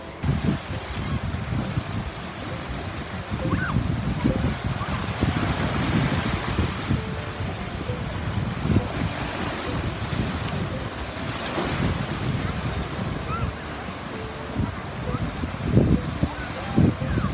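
Ocean surf breaking and washing in the shallows, a steady rushing that swells now and then, with wind buffeting the microphone in low gusts.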